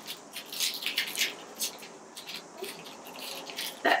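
Clear plastic packaging crinkling and crackling in irregular bursts as a makeup brush is pulled out of its sleeve, busiest in the first couple of seconds and thinning out after.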